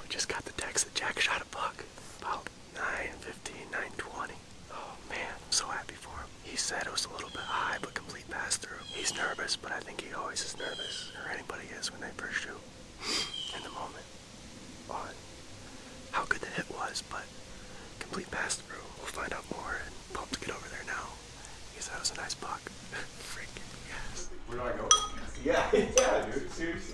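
A man whispering in a low, breathy voice, with a few short high chirps and light clicks between his words.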